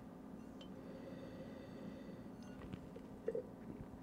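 Quiet room tone with a steady low hum, as a glass of wine is nosed and raised for a sip: a few faint clicks and one short, soft sound a little after three seconds in.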